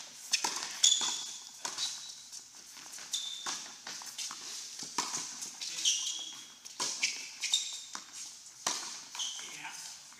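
Tennis rally on an indoor hard court: sharp knocks of racket strikes and ball bounces, with short high squeaks of shoes on the court surface about five times.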